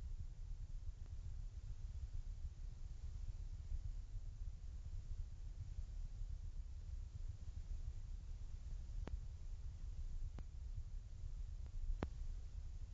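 Bosch Logixx WFT2800 washer dryer in its main wash, drum tumbling a wet duvet cover with a low, quiet rumble. Two short clicks come near the end, about a second apart.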